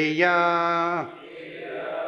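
A man chanting the Sanskrit word śreyaḥ on one long held note, followed by a group of voices repeating it together, more softly and less distinctly.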